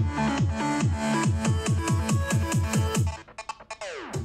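An electronic music track played through a Bose SoundLink Color II portable Bluetooth speaker, as a listening sample. It has a steady beat of bass hits that fall in pitch, about four a second. About three seconds in, the beat breaks off into quick stutters and a falling sweep.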